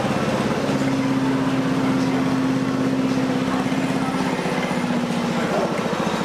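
Large vehicle engine running close by on the street, a steady low drone with a fast, even pulse; its pitch steps down slightly about four seconds in.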